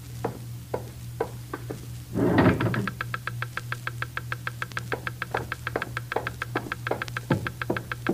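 Geiger counter sound effect: a few slow, irregular clicks, then a short loud rush about two seconds in, after which the clicks come fast and steady, several a second, the warning of radiation from an open radium drawer. A low steady musical drone sits underneath.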